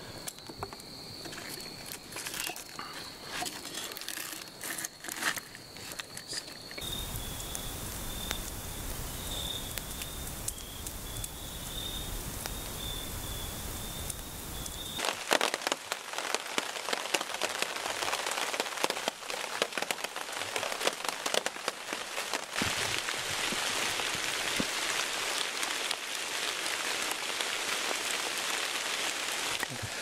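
Rain falling on a tarp overhead, a dense, even spatter of drops from about halfway in. Before it, a campfire crackling with a thin steady high tone behind it, then a stretch of low rumble.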